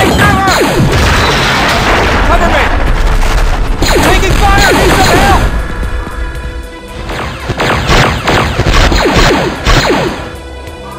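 Home-mixed sci-fi battle sound effects: booms and crashes with laser-blaster shots falling in pitch, over a music score. The sound eases off around the seventh second, then loud blasts start again.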